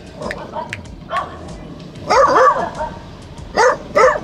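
A dog giving short barks, the loudest a cluster about two seconds in and another near the end.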